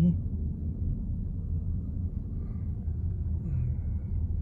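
Steady low road and tyre rumble inside the cabin of a 2023 VW ID.4 electric SUV driving slowly, with no engine note.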